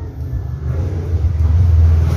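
A low rumble that grows louder near the end, with the character of a motor vehicle running close by.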